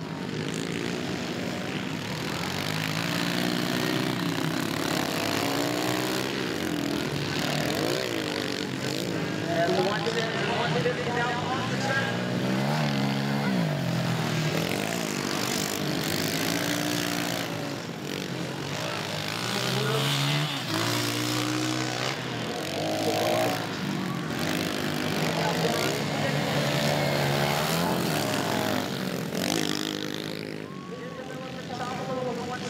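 Several 110cc four-stroke youth dirt bikes with automatic clutches racing round a motocross track. Their engines rev up and fall back again and again as the riders accelerate, shift and roll off over the jumps.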